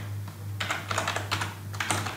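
Computer keyboard keys typed in a quick, uneven run of clicks, entering a short word.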